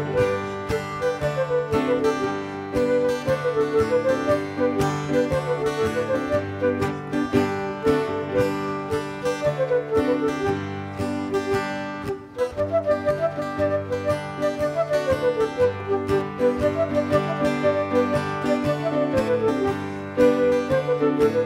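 A traditional folk dance tune played by a small band: a guitar keeps a steady beat under a bouncing flute melody, with a brief break about twelve seconds in.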